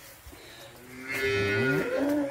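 A cow mooing: one long, loud moo that begins about a second in, its pitch sliding as it goes.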